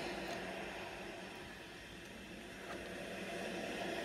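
Steady low background hiss and hum of room noise, dipping slightly in the middle.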